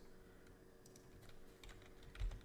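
Faint computer keyboard typing: a few scattered key clicks over a faint steady hum.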